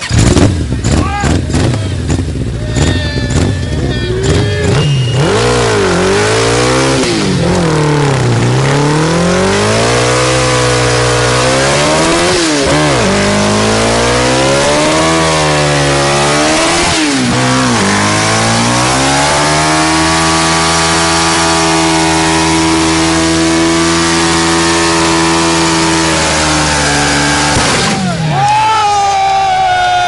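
Sportbike engine revving hard during a stationary burnout, the rear tyre spinning on the tarmac. It opens with a burst of sharp cracks, then the revs swing up and down over and over. From about twenty seconds in they are held high and steady, and they drop right at the end.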